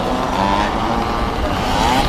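Small 50cc youth motocross bike engine revving, its pitch rising near the end as the rider opens the throttle.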